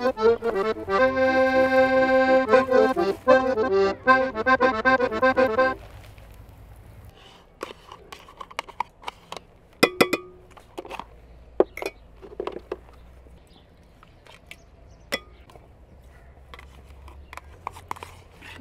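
Accordion music with held chords for about the first six seconds, cutting off abruptly. After that, scattered light clicks and scrapes of a metal fork working butter in an enamel pot.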